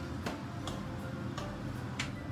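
Wooden spoon clicking and scraping against a non-stick wok while stirring minced fish: about five light clicks, roughly half a second apart.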